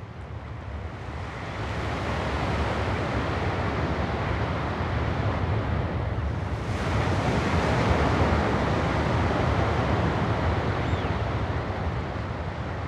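A steady rush of wind and ocean surf that swells in over the first two seconds and turns a little brighter about seven seconds in.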